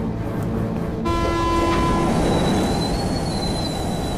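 Electric commuter train running with a steady rumble. Its horn sounds for about a second, about a second in, then a high steady squeal of wheels on the rails.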